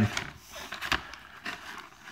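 Soft handling sounds of a paper-wrapped burger in a cardboard tray: the wrapper rustles faintly, with a few light taps and clicks.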